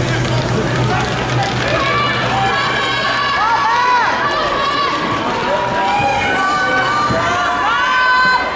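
Crowd of fans shouting and calling out all at once, with several high shouted calls that rise and fall, thickening from about three seconds in.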